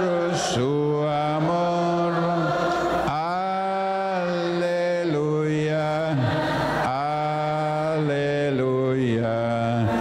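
A voice chanting in worship: long, drawn-out held notes, one to two seconds each, stepping up and down in pitch with short breaks between them.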